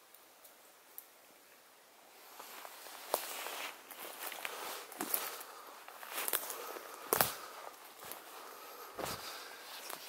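Footsteps crunching and rustling through leaf litter and forest undergrowth, starting about two seconds in, with a sharper snap or crack every couple of seconds.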